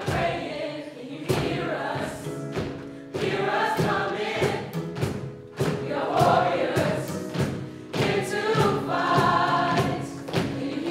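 A group of voices singing together in chorus, backed by sharp percussive hits on a wooden cajon.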